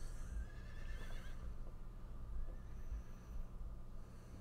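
Faint audio from the anime episode: a high, wavering call in the first second and a half, then little but a low steady hum.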